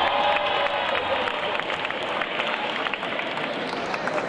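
Audience applauding and cheering, a dense run of many quick claps, with a few voices calling out near the start.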